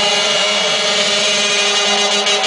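Hardstyle dance music over a club sound system during a breakdown: a loud, sustained, distorted synth chord with a noise wash and no beat.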